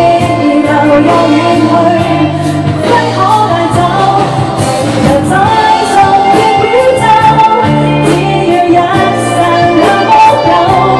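A woman singing a slow pop ballad live into a handheld microphone, backed by a live band of keyboard, bass and drums. A cymbal keeps a steady beat under the sung melody.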